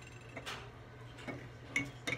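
A few faint, separate taps and clicks of small objects being handled on a table, the clearest about half a second in, over a low steady hum.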